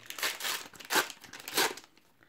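Plastic wrapper of a Panini Adrenalyn XL trading-card fat pack crinkling as it is pulled open by hand, in a few short bursts that thin out near the end.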